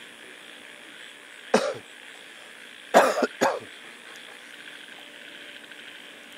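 A person coughing: one cough about a second and a half in, then a quick run of three coughs about three seconds in.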